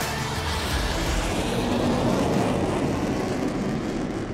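A sustained, noisy whooshing swell in the soundtrack, with music underneath.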